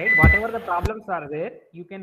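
A man's voice talking over an online call, with a short high beep about a quarter second in and a sharp click near the middle, after which the voice sounds duller.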